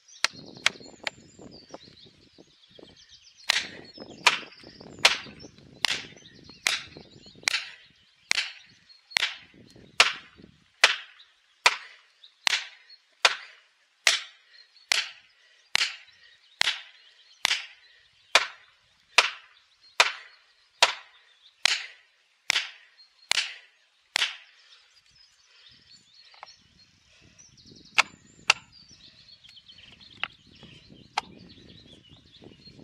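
An axe striking plastic felling wedges driven into the cut of a large tree trunk. There are a few blows at first, then a steady run of sharp strikes at a little more than one a second for about twenty seconds, then two more near the end. The wedges are being driven in to lift and tip the tree during felling.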